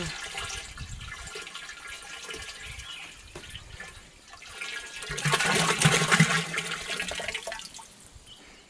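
Liquid pouring and splashing from a plastic jug into a plastic drum. It runs steadily, then grows louder for a couple of seconds from about five seconds in before easing off near the end.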